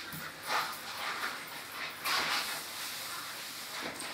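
A cloth wiping a chalkboard: uneven rubbing strokes, the plainest about half a second and about two seconds in.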